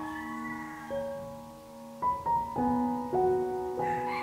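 Background music: gentle piano, notes held and ringing through the first half, then a new phrase of notes entering about two seconds in.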